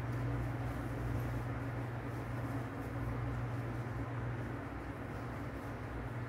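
A steady low hum with an even rushing noise, as from a small motor running without a break.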